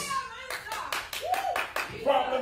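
Hands clapping in a quick, even run of about ten claps, starting about half a second in, in response to the sermon.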